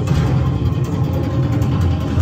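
A loud, deep rumbling drone from a haunted-house soundtrack, heavy in the bass.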